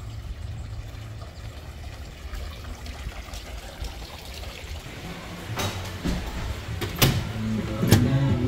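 Low steady rumble of wind and handling noise on a handheld camera's microphone, with faint hiss. In the last few seconds come three sharp clicks or knocks, as glass entrance doors are pushed open and passed through.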